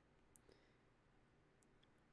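Near silence: room tone with a few faint, tiny clicks.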